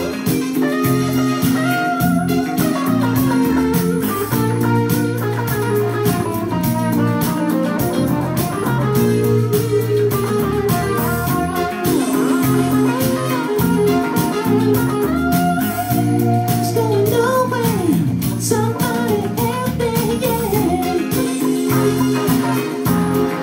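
A jazz-funk band playing live: bass line, drums and held chords under a lead melody with bent, sliding notes.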